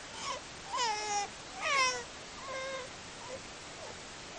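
Young infant's high-pitched squeals and whines: four or five short calls, the loudest about halfway through sliding down in pitch.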